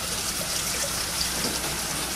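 Water rushing steadily in a toilet being flushed on ping pong balls, which it fails to carry away.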